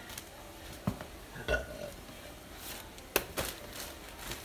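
Quiet handling noises from packing supplies: a sharp click about a second in, a brief low sound about a second and a half in, and another sharp click just past three seconds.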